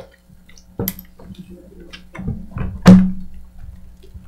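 Knocks and thumps on a conference table, picked up close by the table microphones: a lighter one about a second in and a loud one near three seconds in.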